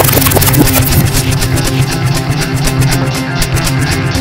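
Loud psychedelic trance music, dense and layered over a steady beat.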